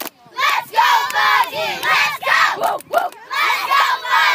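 A group of children chanting a cheer in unison, shouted in short rhythmic bursts about twice a second, with clapping.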